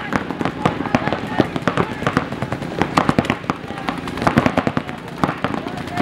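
Several paintball markers firing many quick shots in irregular strings.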